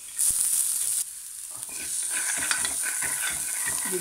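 Chopped onion tipped into hot oil in a steel pan, setting off a loud burst of sizzling for about a second. Then a steel spoon scrapes and stirs the onion and garlic in the pan as they keep sizzling.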